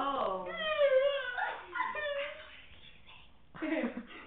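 Girls' high-pitched whining voices with gliding, wavering pitch, trailing off after about two and a half seconds, then a short vocal burst just before the end.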